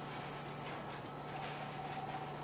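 Quiet room tone: a steady low hum and hiss, with a few faint ticks and a faint steady tone that comes in about halfway through.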